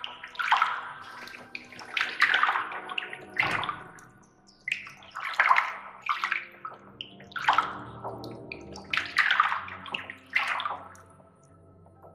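Liquid poured from a gourd ladle, splashing in a series of separate pours about one every second or two.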